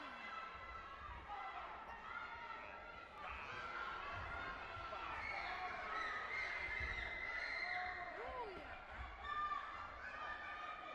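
Many overlapping voices talking and calling out across a large sports hall, with a few dull low thuds.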